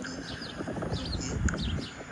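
Small birds chirping in short, quick downward-sweeping notes, repeated several times, with a brief knock about one and a half seconds in.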